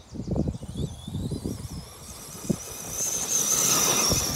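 Electric motor of an FTX Outlaw radio-controlled car whining as the car accelerates hard across grass. The pitch rises for about three seconds and then holds high and steady, over a low rumble with a sharp knock about halfway through.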